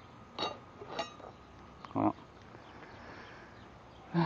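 Two short clicks of hand tools being handled, about half a second apart, then a single spoken 'well'.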